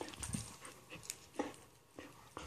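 A dog making quiet sounds close to the microphone: a few short soft noises and small clicks while it holds a rope toy, the loudest a brief one about a second and a half in.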